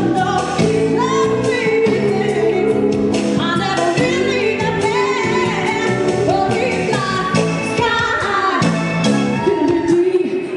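A woman singing lead into a microphone, with a live band of bass guitar, electric guitar, keyboards and backing singers playing behind her; the voice slides between notes over a steady band sound.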